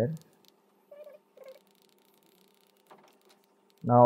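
Quiet room tone with a faint steady hum. About a second in come two short, faint pitched cries close together, and there is a single soft click about three seconds in.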